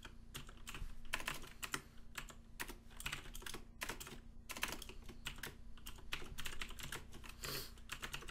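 Typing on a computer keyboard: key clicks in quick, irregular runs with short pauses between them.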